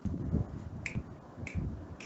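Two short, sharp clicks about two-thirds of a second apart, over dull low thumps.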